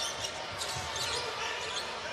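A basketball being dribbled on a hardwood court, a few bounces over steady arena crowd noise.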